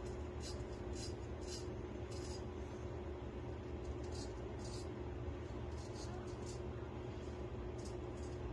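Naked Armor Erec straight razor scraping through thick beard stubble in short, scratchy strokes, several in quick succession and then a few more at uneven gaps, over a steady low room hum.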